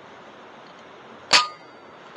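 A single shot from a .22 FX Impact M3 pre-charged air rifle: one sharp crack about a second and a half in, with a brief metallic ring after it.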